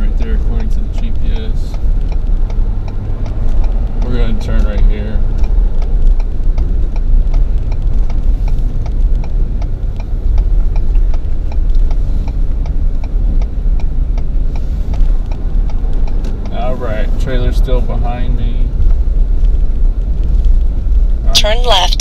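Steady low rumble of a Ford F-350 pickup driving, engine and road noise heard from inside the cab.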